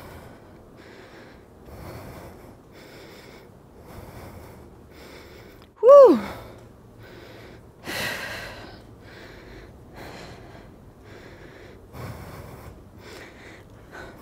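A woman breathing hard and rhythmically, about one breath a second, from the exertion of high-intensity pedalling. About six seconds in she lets out a loud 'whoo!', followed by a strong exhale.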